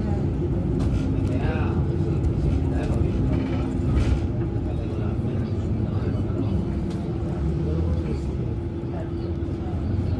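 Inside a moving city bus: the engine and drivetrain give a steady low rumble with a humming tone, and voices talk faintly in the background.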